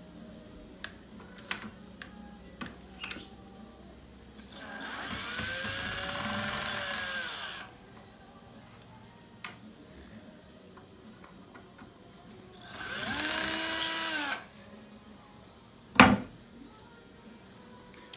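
Red cordless drill-driver backing screws out of an OSB roof panel. It makes two runs: a run of about three seconds starting some five seconds in, and a shorter one about thirteen seconds in, each whining up in pitch and winding down. Small taps and clicks fall between the runs, with one sharp knock near the end.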